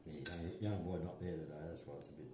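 Cutlery clinking against dishes, under a low-pitched voice that runs through most of the two seconds.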